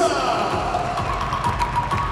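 Music and a voice over an arena's public-address system, echoing through the hall.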